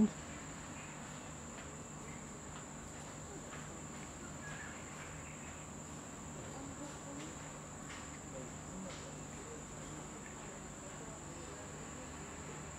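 Steady, high-pitched drone of insects, one unbroken tone, over a faint low hum.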